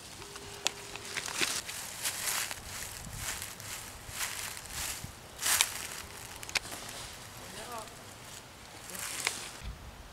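Footsteps crunching and shuffling through dry fallen leaves, in an irregular run of steps, with a couple of sharp clicks among them.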